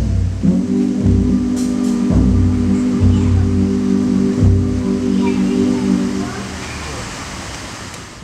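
Live band ending a song: a steady held final chord with a few low drum or bass hits under it, stopping about six seconds in. Fainter noise follows as the sound fades away.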